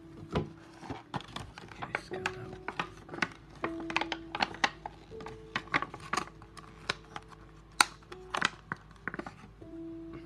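Clear plastic packaging tray of a Magic: The Gathering deck being handled, giving many quick clicks and crackles as cards are pulled from it, the sharpest click near the end. Soft background music with long held notes runs underneath.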